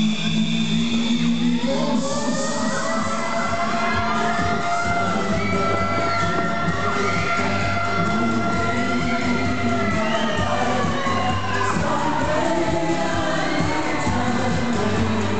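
Loud music from a fairground ride's sound system, with a crowd of riders cheering and shouting over it.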